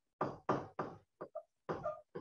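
A stylus knocking against a digital writing surface while numbers are handwritten, about six separate knocks over two seconds.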